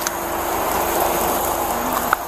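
Steady hum and noise of an idling car engine, with a constant faint tone over it.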